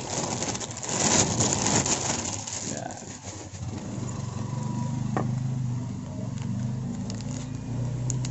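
Plastic courier pouch and clear plastic sleeves crinkling as they are handled, loudest in the first three seconds. From about four seconds in, a low steady hum comes up underneath.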